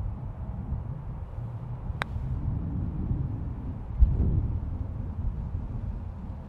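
A putter striking a golf ball once: a single sharp click about two seconds in. Under it, a steady low rumble of wind on the microphone, with a louder low thump about four seconds in.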